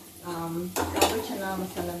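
Steel ladle clinking and scraping against a stainless-steel cooking pot as food is stirred on a gas stove, with a couple of sharp metal clinks about a second in. A woman's voice talks over it.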